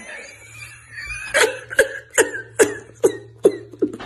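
A man laughing hard. After a softer start, it breaks from about a second and a half in into a string of about seven sharp, breathy bursts, a little over two a second.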